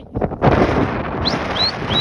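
Wind buffeting the phone's microphone, starting abruptly about half a second in, with three short, high rising whistles in the second half.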